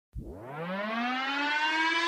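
Intro sound effect: one pitched tone sweeps up from very low in its first second, then levels off and keeps swelling, like a siren winding up.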